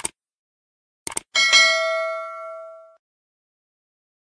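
Subscribe-button animation sound effects: a short mouse click at the start, a quick double click about a second in, then a bright bell ding that rings out and fades over about a second and a half.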